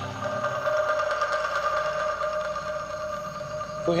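Eerie background score: a few sustained drone tones held steady over a fast, even, insect-like trill. Near the very end a rising pitched call begins.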